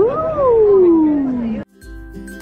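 A woman's long, drawn-out "ooh" that swoops up in pitch and then slides down, cut off suddenly about one and a half seconds in. Soft background music with plucked notes follows.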